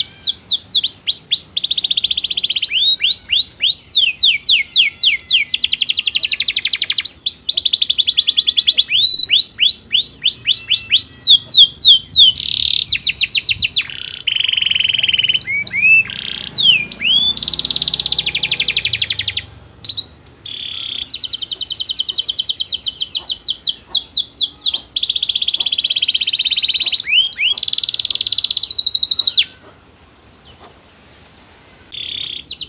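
Domestic canary singing a long song of fast trills and rolling runs of repeated high notes, with two short breaks partway through, then stopping abruptly near the end.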